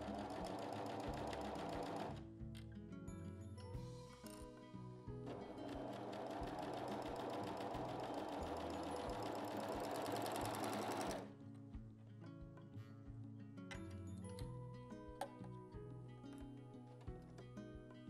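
Juki MO-2500 overlock machine (serger) stitching a shoulder seam in jersey fabric: a short run of about two seconds, then a longer run of about six seconds starting about five seconds in, each stopping abruptly. Background music plays throughout.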